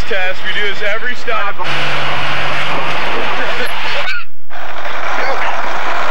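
People talking, then a van on a wet street, its engine and tyres making a dense steady rush. The sound cuts out suddenly about four seconds in and comes back as a steadier rush with a low hum.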